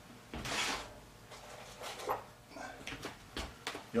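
Light workshop handling noises: a short scrape about half a second in, then a few small scattered clicks and knocks, as a tool is picked up.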